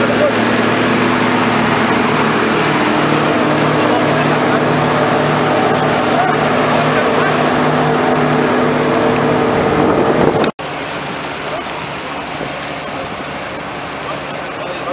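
Combine harvester running at work in a grain field, a loud steady machine noise with a pulsing low hum. It cuts off suddenly about ten and a half seconds in, leaving quieter outdoor noise.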